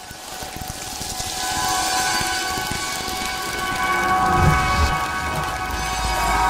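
Sound-design bed of an animated station logo bumper: a rain-like wash of noise that swells in over the first two seconds, with held synthesizer tones over it and a brief low rumble about four and a half seconds in.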